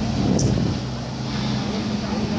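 Street traffic at a city intersection: a vehicle engine running with a steady low hum over general road noise, with faint voices around the middle of the mix.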